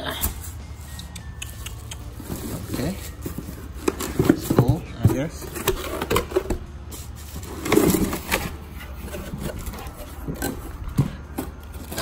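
Cardboard box and bubble-wrap packaging being handled and rummaged through: a run of crinkles, rustles and small clicks. Indistinct voices are heard now and then, around four to five seconds in and again near eight seconds.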